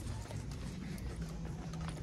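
Store background with a steady low hum, and faint footsteps on a hard tiled floor while walking down the aisle.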